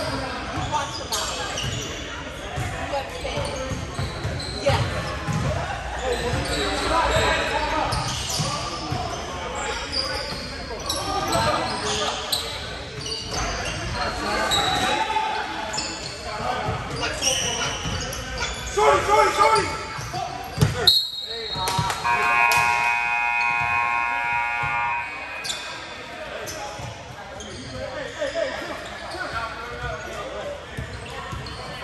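Basketball game in a gym: the ball dribbling and bouncing on the hardwood floor, sneakers squeaking and players calling out, echoing in the large hall. About two-thirds of the way through there is a sharp knock and a short whistle, followed by a steady pitched tone held for about three seconds as play stops.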